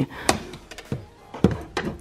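A few light knocks and taps as a framed letter board is handled and set down against a windowsill.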